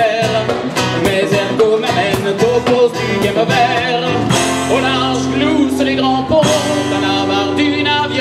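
Live rock band playing: two guitars over a steady drum beat, with a chord left ringing for about two seconds midway.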